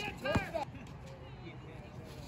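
A brief voice about half a second in, then faint, steady outdoor background noise with no distinct event.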